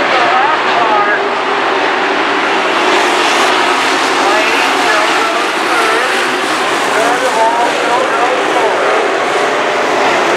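A pack of dirt-track modified race cars running, their V8 engines revving up and down through the turns, with voices mixed in.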